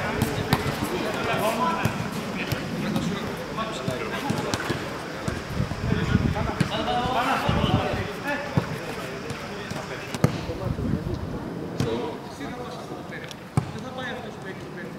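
Footballs being kicked and passed back and forth: repeated short, sharp thuds of boots striking the ball at irregular intervals, a couple of louder kicks near the end, over background chatter of men's voices.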